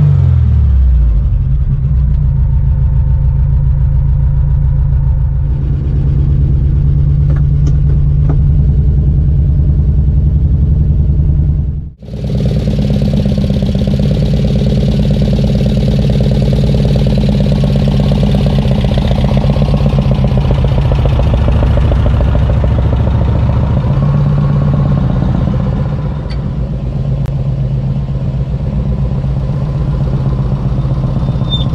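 Volkswagen Karmann Ghia's air-cooled flat-four engine idling steadily, its revs dropping right at the start. About twelve seconds in the sound breaks off for an instant, and the engine then keeps running, heard from outside the car.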